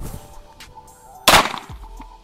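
A single shot from an Archon Type B 9mm pistol, a little over a second in.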